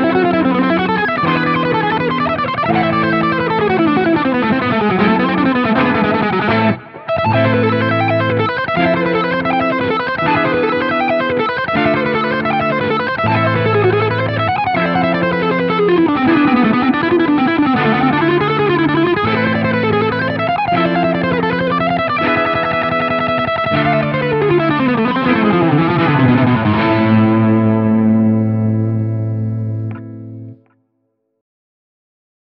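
Electric guitar playing a fast, alternate-picked jazz-fusion lick, long scale runs in A melodic and harmonic minor that climb and fall over sustained backing chords. There is a brief break about seven seconds in, and the lick ends on a held low chord.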